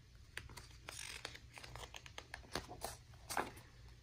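Hand turning the page of a hardcover picture book: faint paper rustling with soft clicks, a little louder about a second in and again just after three seconds.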